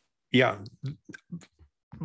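Speech: a man says "yeah", then a few short, clipped voice fragments with dead silence between them, the choppy sound of a video-call line.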